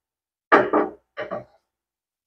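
A non-stick frying pan set down on a gas stove's metal pan support with a sharp knock about half a second in, followed by two shorter, quieter knocks as it shifts on the grate.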